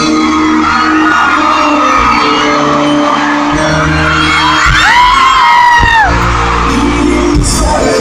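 Live band music played loud through a concert PA, recorded from the audience, with a loud held whoop from a fan near the microphone, rising and falling, about five seconds in.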